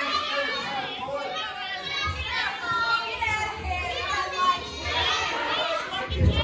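Small crowd chattering and calling out in a hall, with many children's voices among it.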